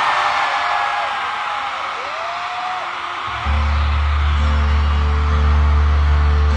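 Arena crowd cheering and shouting with a few high whoops. About three and a half seconds in, a deep, loud, sustained chord starts suddenly over the PA and holds steady as the song's intro begins.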